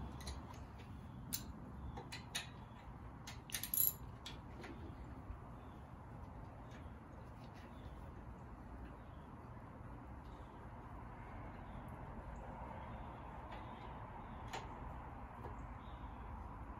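Metal hand tools (a spark plug socket, extension and ratchet) clinking and clicking against metal while spark plugs are being removed from an engine. There are several sharp clinks in the first four seconds, the loudest near four seconds in, then a long faint stretch and one more light click near the end.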